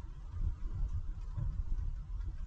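Truck driving along a road: a low, uneven rumble of engine, tyres and wind, with a faint steady hum above it.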